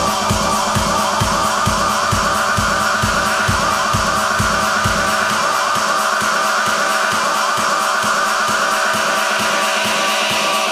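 Electronic dance music from a DJ set: a steady four-on-the-floor kick drum at about two beats a second under a looping synth riff. About halfway through, the kick drops out, leaving the riff on its own as a breakdown.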